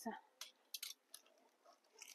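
A few faint, brief clicks and rustles of clothes hangers being handled on a wall rail, in an otherwise near-silent pause.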